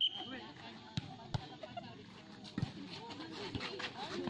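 A short referee's whistle blast at the very start, then three sharp smacks of a volleyball being hit over about the next two seconds: the serve and the rally that follows.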